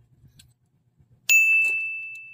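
A single bright bell-like ding sound effect, struck a little past halfway and ringing on as it slowly fades. Before it, a few faint clicks of plastic model-kit parts being handled.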